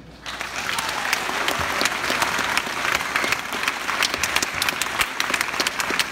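Audience applauding, the clapping breaking out a moment in, just after the jazz band's final chord has died away.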